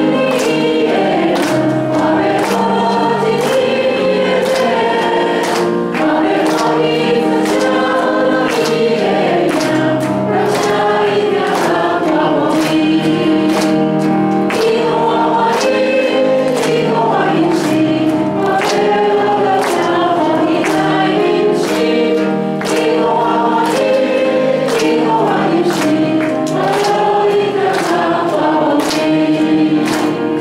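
Worship singers and a standing congregation singing a praise song in Taiwanese, with accompaniment carrying a steady beat.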